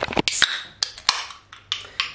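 A handful of short, sharp clicks and knocks from a camera being handled and set down, spaced unevenly with short pauses between them.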